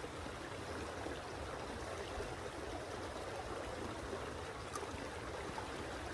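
Shallow stream's current rushing steadily over a riffle.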